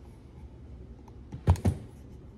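Two quick, sharp low thumps a fraction of a second apart, about a second and a half in.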